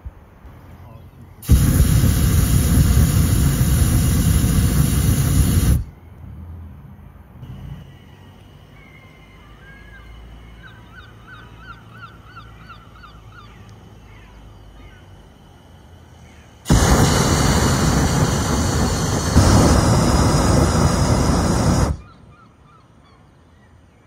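Hot air balloon's propane burner firing in two long blasts, each about four to five seconds, with a quiet gap between them. Faint short bird calls are heard in the gap.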